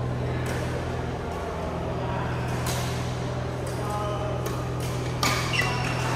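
Badminton rally: sharp racket strikes on a shuttlecock, about one every second and coming faster near the end, with short shoe squeaks on the court floor near the end. Under them runs a steady low hum, with distant voices carrying in a large hall.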